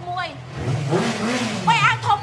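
Sport motorcycle engine revved once: the pitch climbs for about half a second, then falls away as the throttle closes.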